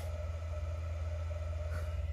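Steady low hum with a fainter steady tone above it, unchanging throughout.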